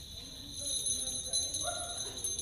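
Many small hand bells jingling together continuously as a congregation rings them.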